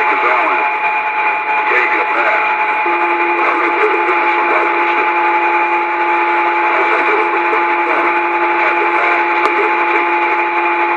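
Two-way radio receiver putting out loud static with a steady high whistle, joined about three seconds in by a second, lower steady tone, with a faint garbled voice in the noise. One sharp click near the end.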